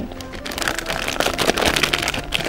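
Plastic crinkling and rustling as it is handled, a dense irregular crackle, over soft background music.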